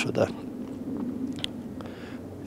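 A man's speech trailing off, then a short pause in which only a faint steady background remains, broken by a small mouth click about one and a half seconds in.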